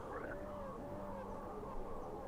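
Faint ambient drone backing under the recitation: a low steady hum with soft tones gliding up and down in slow arcs above it.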